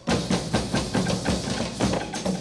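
A drum ensemble of many hand drums playing together in a fast, dense rhythm of sharp strikes, cutting in suddenly.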